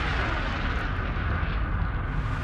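Deep rumbling whoosh sound effect of a TV programme's title ident, a steady swell of noise with a heavy low rumble.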